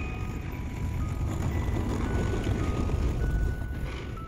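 Low rumble of a city tram running along the street, swelling toward the end, under soft background music of slow held notes.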